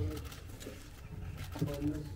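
Pigeon cooing faintly in a few short, low notes, with quiet voices beneath.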